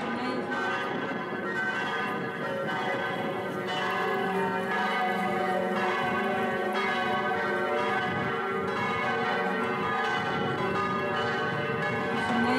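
Church bells ringing, stroke after stroke, their tones overlapping and hanging on.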